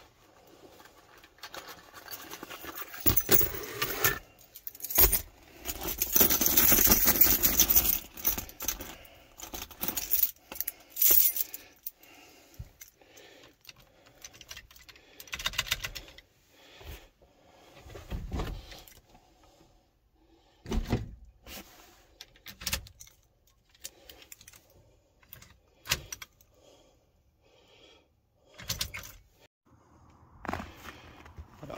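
Key ring jangling at the ignition of a 1978 Chevrolet C10 as the key is worked, with scattered clicks and knocks and a loud noisy stretch of a couple of seconds about six seconds in. No engine runs: the truck won't start after sitting since October.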